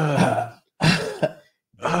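A person's voice in three loud, rough, cough-like bursts, each about half a second long.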